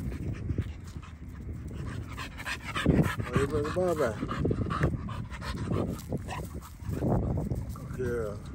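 A dog panting close by as it plays fetch.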